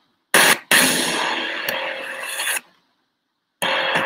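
Music and sound effects from the opening of a promotional countdown video played over a screen share, starting with a short burst just after the start and breaking off into about a second of silence near the end.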